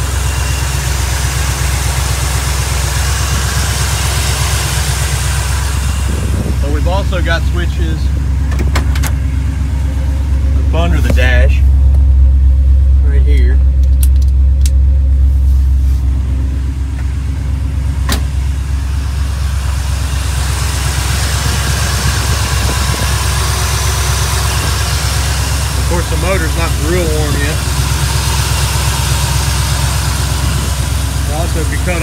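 V8 engine of a 1967 Chevrolet Camaro with headers and Flowmaster mufflers idling with a steady low rumble, which grows louder for a few seconds in the middle. A few sharp clicks come from the under-dash switches being flipped to test whether they run the electric fans.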